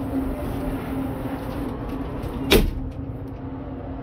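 A single sharp metal clunk about two and a half seconds in, as the aluminium tube support frame of a pop-top camper roof is set into place, over a steady low hum.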